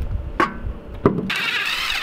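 Two dull knocks as a car wheel is hung on its hub, then a cordless impact wrench starts a little over a second in and runs steadily, spinning in the wheel bolts.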